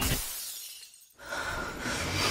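A shattering crash sound effect cuts off the logo music, and its hissing tail dies away within about a second. After a moment of near silence, a low rumble with a steady high whine fades in.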